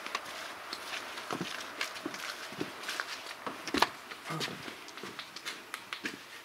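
Footsteps walking, with irregular scuffs and knocks and one sharper knock about four seconds in.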